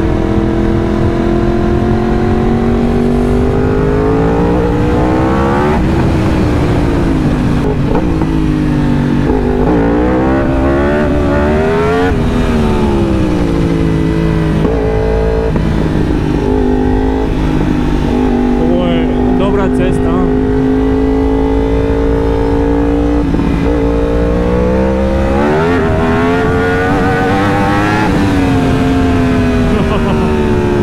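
2018 Yamaha R1's crossplane inline-four engine running under way, its pitch climbing and dropping several times as it revs up and rolls off, holding steadier through the middle, with steady wind rush underneath.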